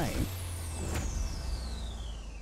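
Closing sound design of a TV advertisement: a low rumble with a thin high tone that falls steadily in pitch and a single sharp tick about a second in, all fading away.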